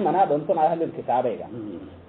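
Speech: a man preaching in a strongly rising and falling, sing-song voice, trailing off toward the end.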